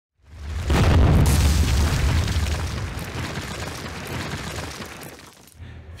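A deep boom with a crash of noise, swelling up within the first second and dying away in a long rumbling tail over about five seconds: an intro sound-effect hit.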